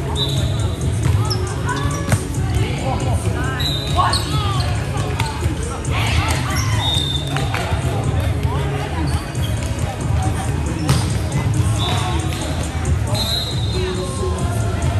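Indoor volleyball play: sneakers squeak sharply on the court floor several times, the ball is struck sharply twice (about two seconds in and near eleven seconds), and players' voices call out.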